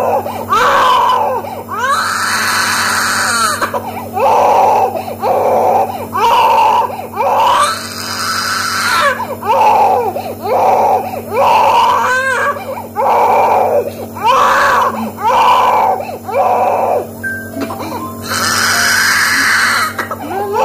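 An infant crying hard in repeated wails, each about a second long with short catches of breath between. Three of them rise into louder, shriller screams: about two seconds in, around eight seconds, and near the end.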